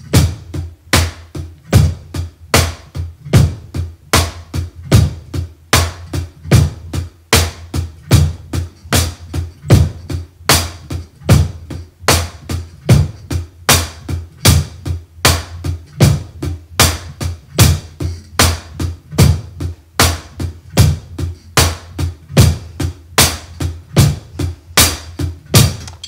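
Drum kit playing a basic rock groove at a slow, steady tempo: eighth notes on the hi-hat, bass drum on beats one and three, snare on two and four.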